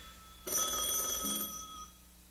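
A single telephone ring, starting about half a second in and stopping just before the end.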